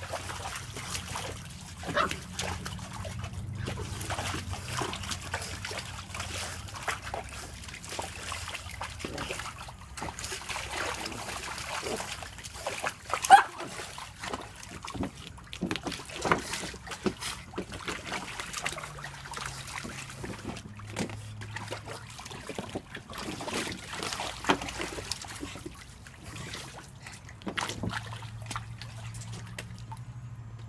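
A pug splashing and sloshing through shallow water in a plastic kiddie pool, with short dog noises among the splashes. The sharpest, loudest sound comes a little before halfway.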